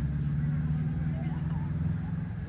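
A steady low hum of a running motor, with a few faint bird chirps above it.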